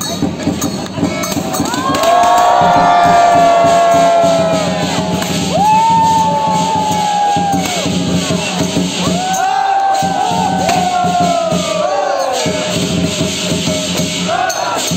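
Lion dance drum, gong and cymbal music playing, with a crowd cheering in three long held calls that trail off downward.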